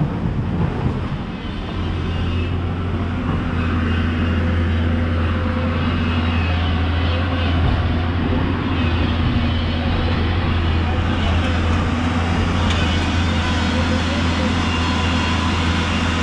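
Hyundai crawler excavator's diesel engine running as a steady low hum, growing louder about two seconds in and then holding.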